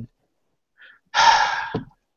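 A man's sharp intake of breath through the mouth, lasting under a second, about halfway through a pause in his sentence.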